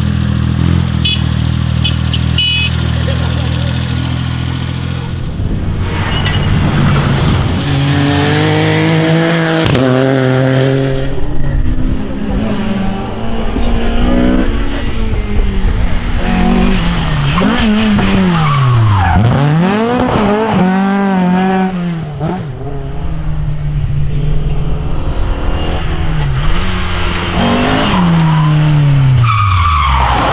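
A small compact tractor's engine running steadily for the first few seconds. Then rally car engines are heard at full throttle, their pitch climbing and dropping sharply through gear changes as the cars pass, among them an Opel Ascona and an Opel Kadett coupe.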